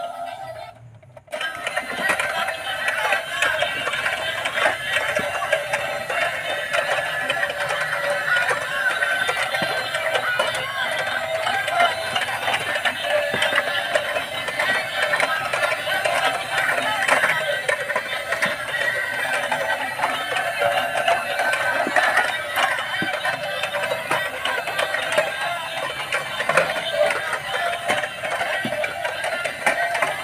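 Thin, tinny electronic music from the small built-in speakers of battery-powered dancing Tayo toy vehicles, switched on about a second in after a brief silence and then playing on continuously.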